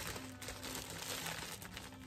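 Clear plastic packaging crinkling as it is handled, over soft background music.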